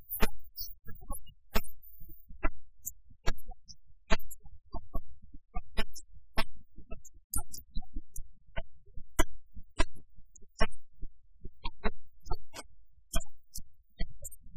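Sanxian and pipa plucked together, a quick run of sharp irregular plucks with a low thud under each.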